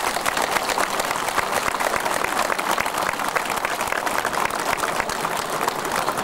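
A crowd applauding: many people clapping in a steady, dense stream.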